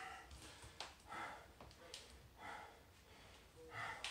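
A man breathing hard from exertion in a slow, even rhythm, four breaths about a second and a quarter apart. Two faint clicks come in the first two seconds.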